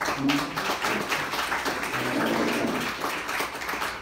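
Audience applauding, many people clapping at once, the clapping easing off near the end.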